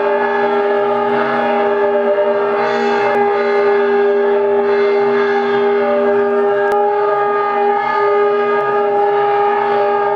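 Steady drone of several held notes with no beat. The lowest note drops out about seven seconds in while the others carry on.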